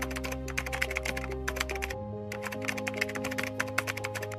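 Rapid keyboard-typing clicks in two quick runs with a short pause about two seconds in, a typing sound effect for on-screen text, over soft background music of held chords and a low bass.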